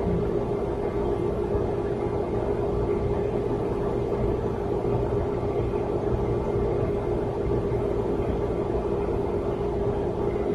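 Steady room drone: an even hum with a constant low tone and rumble, unchanging throughout, with no speech.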